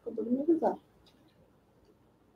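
A brief voiced utterance, a short murmured bit of speech, in the first second, then quiet room tone.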